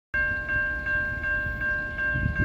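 Railway grade-crossing warning bell ringing in steady strokes, a little under three a second, as the crossing is activated for an approaching train. A low rumble lies beneath it.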